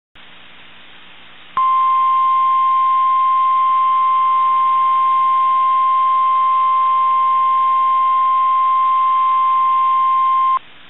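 NOAA Weather Radio 1050 Hz warning alarm tone: one steady, loud tone that starts about a second and a half in and holds, over a steady radio hiss. The tone signals that a warning broadcast follows, here a tornado warning.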